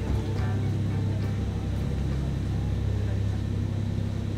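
Steady low rumble of a boat's engine running underway, with background music trailing off in the first second.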